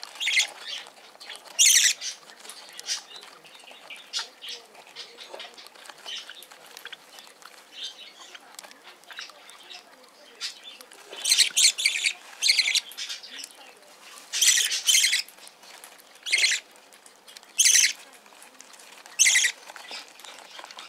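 A budgerigar chick being spoon-fed: short hissing bursts come and go, one early, a cluster a little past the middle and several more toward the end, over faint soft clicking.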